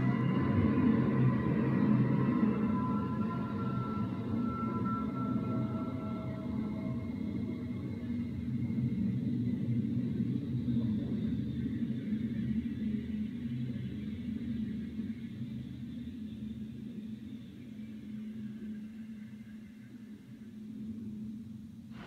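Film soundtrack played from a computer: a low, droning rumble with a few held higher tones over it in the first several seconds, growing quieter toward the end.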